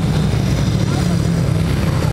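500cc speedway motorcycle engine running steadily at low revs, with a person's voice in the background.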